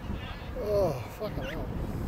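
Short shouted calls from raised voices, a couple of them about a second in, over a steady low rumble of wind on the microphone.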